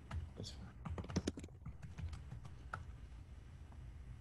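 Clicks of typing on a computer keyboard, with a quick flurry about a second in, heard over a low steady hum through a video-call microphone.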